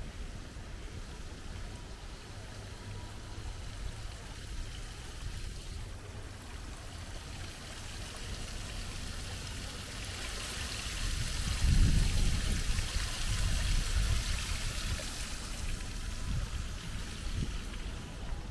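Small stream trickling and splashing over a low stone cascade, growing louder and fuller about ten seconds in. A low rumble, the loudest moment, comes about twelve seconds in.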